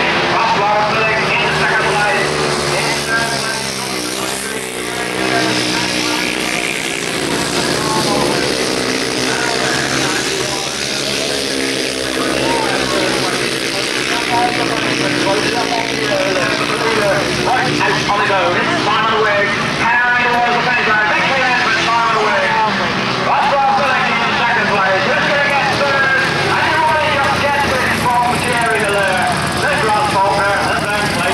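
Single-cylinder grasstrack racing motorcycles running and revving as they race round the track, with a commentator's voice over a public-address system mixed in.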